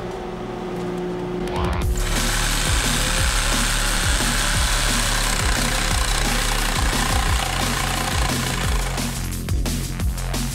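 A Mastercraft jigsaw cutting a wooden board, starting about two seconds in and easing off near the end. Electronic music with a steady beat plays under it.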